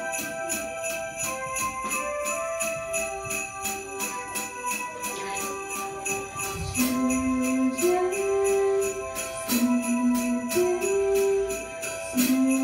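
Sleigh bells shaken in a steady rhythm, about four shakes a second, over sustained keyboard chords as a band plays a slow Christmas song. A stepwise melody line enters about seven seconds in.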